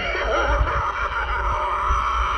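A short laugh over a steady, many-toned electronic drone.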